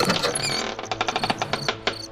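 A wooden door being pushed open: a few short high squeaks from the hinge, then a fast run of creaking clicks as it swings.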